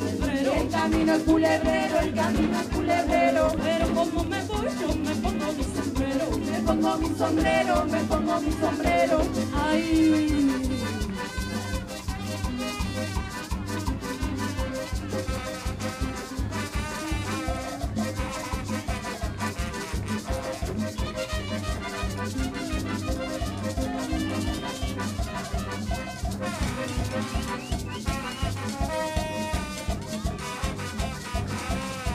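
A live cumbia band playing: accordion, congas and maracas over a steady dance beat. The music drops somewhat in loudness about ten seconds in.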